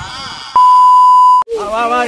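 A loud, steady, high electronic bleep lasting just under a second, starting and stopping sharply in the middle of speech: a censor beep edited over a spoken word.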